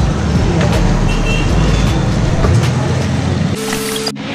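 Roadside traffic noise with a heavy, uneven deep rumble. Near the end comes a half-second burst of video-tape static and steady hum, a VHS-style transition effect, which cuts off suddenly.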